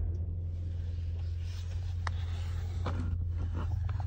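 A steady low hum inside a vehicle cabin, with a couple of faint clicks about two and three seconds in.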